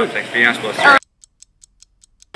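Talking cuts off abruptly about a second in, replaced by faint, rapid ticking from a clock-tick sound effect, about six ticks a second.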